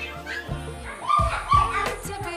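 Background pop song with a steady beat. Two short, high yelping cries sound about a second in and are louder than the music.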